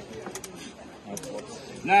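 Faint background voices with a few brief, light clicks, then a man's voice begins loudly near the end.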